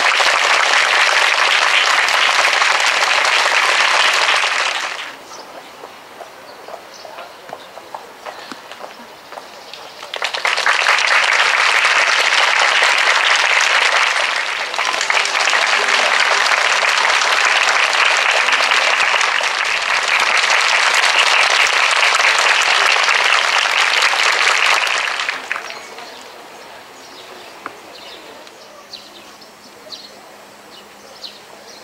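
A crowd clapping in two long spells. The first stops about five seconds in; the second starts again a few seconds later, runs about fifteen seconds, and then dies away.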